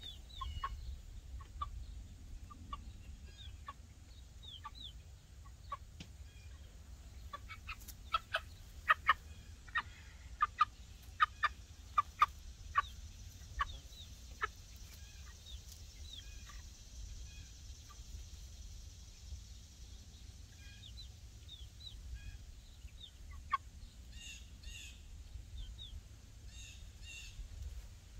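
A young chicken peeping in short, high calls, scattered at first, with a run of louder peeps between about eight and thirteen seconds in. A faint repeated high chirping comes in near the end.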